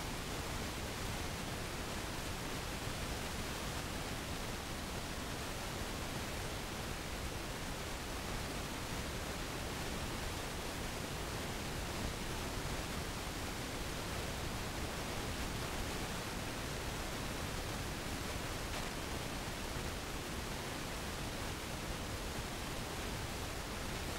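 Steady, even hiss with nothing else on it: recording noise such as tape hiss.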